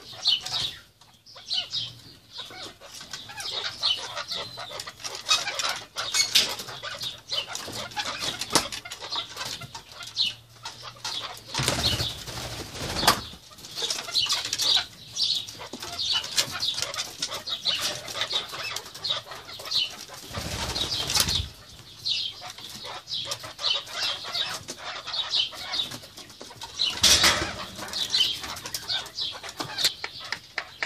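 Alectoris partridges scurrying and fluttering their wings during courtship circling, with short, high chirps repeating several times a second throughout. A few louder rushes of noise come about twelve, twenty and twenty-seven seconds in.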